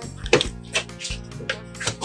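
Background music with a regular pulse of sharp, plucked-sounding notes.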